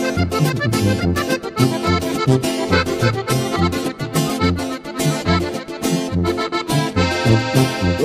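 Sierreño band playing an instrumental passage: a button accordion carries the melody over steady tuba bass notes and strummed guitar, in a lively dance rhythm.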